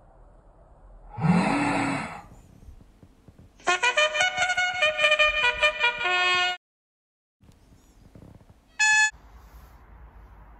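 A white plastic fuel-filler funnel blown like a horn: a buzzy, breathy blast about a second in, rising in pitch. From about four seconds a quick run of trumpet-like notes plays, then stops abruptly, and a short bright honk sounds near the end.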